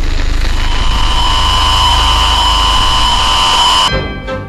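Television static sound effect: a loud, even hiss with a steady high electronic whine over it. It cuts off abruptly near the end.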